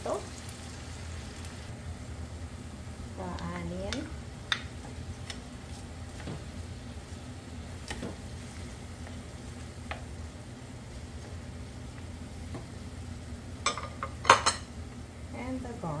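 Diced tomatoes and onion sizzling in oil in a frying pan, stirred with a wooden spoon, with light scrapes and clicks against the pan. A few sharp knocks a couple of seconds before the end are the loudest sounds.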